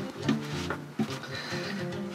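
Background music: a soft plucked-string melody with a few held notes.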